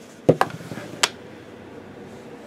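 A plastic die rolled onto a table: two quick hard knocks as it lands, then a single sharp click about a second in as it settles.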